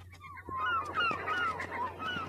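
Gulls crying, many short calls overlapping, starting about half a second in.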